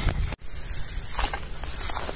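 Outdoor handheld-phone noise: low wind rumble on the microphone and rustling as the person moves through the field. The sound drops out for an instant about a third of a second in, where the recording is cut.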